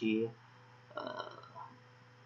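A man's voice finishing a word, then a short, throaty vocal sound about a second in, over a steady low electrical hum.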